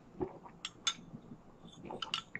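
A metal spoon stirring a drink in a glass tumbler, clinking against the glass: a few light clinks, the sharpest two close together just after half a second in.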